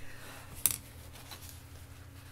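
One short, light click about two-thirds of a second in, over a faint steady low hum.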